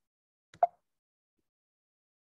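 Near silence with one short pop about half a second in.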